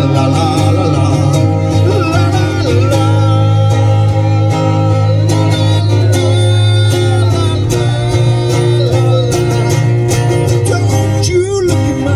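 Live amplified guitar music played through a PA: acoustic and electric guitars over a steady, heavy low bass, with a singer's voice at times.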